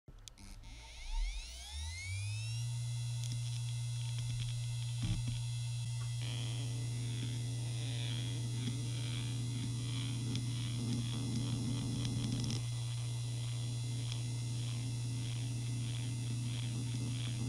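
Maxtor D740X-6L 40 GB IDE hard drive spinning up, its whine rising over the first two to three seconds and settling into a steady hum, with a sharp click about a second in and another about five seconds in. From about six seconds in, the heads seek continuously under a seek test, giving a fast, rhythmic chattering over the hum.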